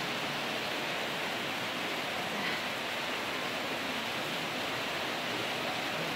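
Steady, even rushing noise in the room, with no distinct events.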